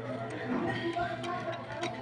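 People talking in the background, with a few light, sharp clicks of a metal hand tool against the scooter, about a second in and again near the end.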